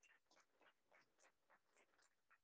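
Near silence, with faint scattered hand claps from a few seated guests, several claps a second.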